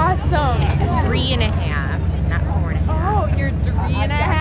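Indistinct voices talking nearby over a steady low engine rumble.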